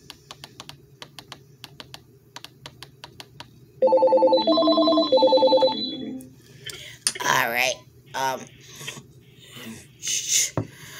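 Typing on a computer keyboard, a run of quick light clicks. About four seconds in, an electronic telephone ring steps back and forth between a few pitches for about two seconds, then a person's voice follows.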